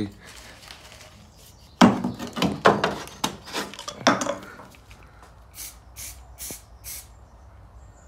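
Knocks and clatter as things are shifted about, then, near the end, four short sharp rattles about two a second: an aerosol can of zinc primer being shaken before spraying.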